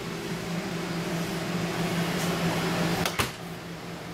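A steady mechanical hum runs throughout. A little after three seconds in, a cabinet door shuts with a single sharp knock.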